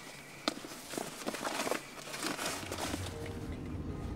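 Clothes, bags and gear being rummaged through by hand in a packed car: rustling with scattered sharp clicks and knocks. Near the end this gives way to the low steady rumble of a car driving.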